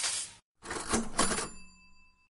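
Background music cuts off suddenly, then a short sound effect follows: a brief clatter and a bell ringing out in a fading tone.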